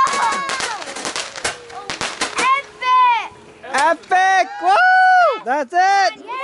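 Consumer fireworks crackling and popping in a rapid string of sharp cracks for the first couple of seconds. Then come short, high-pitched shouts from people nearby, rising and falling.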